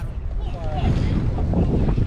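Wind buffeting the microphone on a moving jet ski, over a steady rush of water and engine noise. A faint voice comes through about half a second in.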